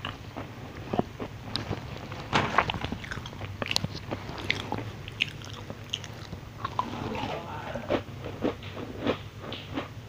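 Close-miked crunching and chewing of crisp Chinese New Year cookies: irregular crackly bites and chews, the loudest crunch about two and a half seconds in.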